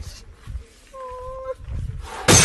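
Elephant calling: one short, steady-pitched call about a second in, lasting about half a second, over low rumbling wind noise.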